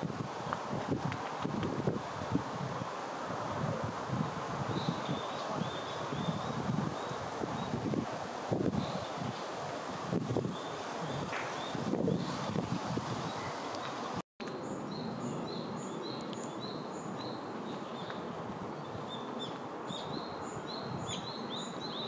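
Wind and rustling leaves in woodland with scattered high bird chirps. After a brief cut about two-thirds of the way through, a bird repeats a short high call note about twice a second.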